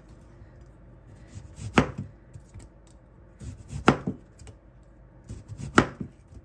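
Chef's knife slicing a peeled Korean radish (mu) into thick rounds on a plastic cutting board. There are three strokes about two seconds apart, each ending in a sharp knock as the blade goes through and hits the board.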